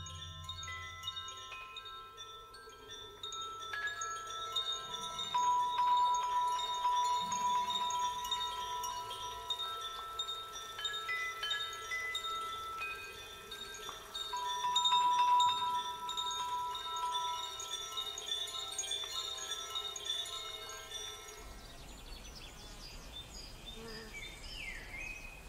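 Soundtrack music of overlapping chime-like ringing tones at many pitches, some held for several seconds. The tones stop a couple of seconds before the end, leaving a faint low background rumble.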